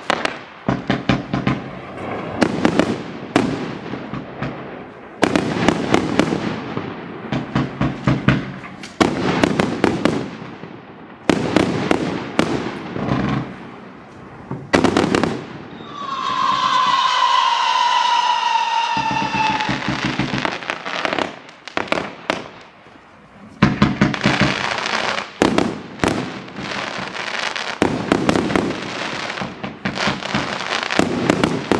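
Howling Wolf fireworks firing: a rapid run of shots and aerial bursts with crackling throughout. About sixteen seconds in, a loud whistle with a falling pitch holds for about four seconds.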